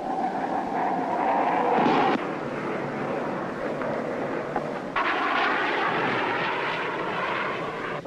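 Jet fighter aircraft flying over, engine noise with a whine that rises slightly and then cuts off abruptly about two seconds in. A second stretch of jet noise starts abruptly about five seconds in.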